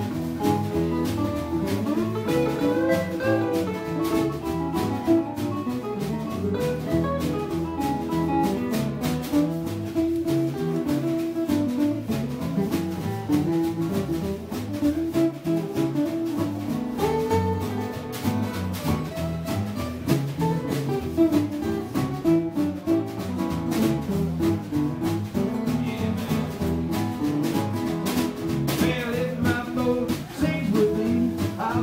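Acoustic blues band playing an instrumental stretch: several acoustic guitars picking, with bass and a drum kit keeping a steady beat.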